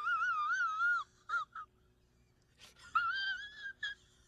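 A man wailing in a high, wavering, crying voice for about a second, then two short sobs, then a second, slightly rising wail near the end.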